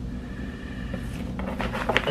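Low steady room hum, then in the second half a quick run of soft rustles and light clicks as a plastic DVD case and a paper letter are handled.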